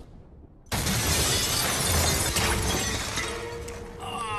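A sudden loud crash of shattering glass and breaking debris, starting about a second in and tailing off over the next few seconds.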